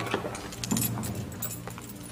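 Light metallic jingling and clinking, many quick small strikes, over a steady low drone.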